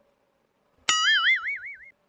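A cartoon "boing" sound effect: a sudden start about a second in, then a single wobbling, springy tone lasting about a second.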